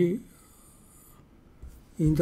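A man's spoken word trails off, followed by a quiet pause. In the pause a faint high hiss cuts off about a second in, and a soft low thump comes near the end.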